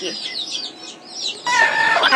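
Domestic chickens calling: a run of short, high, falling chirps, then from about one and a half seconds in a loud, drawn-out hen call.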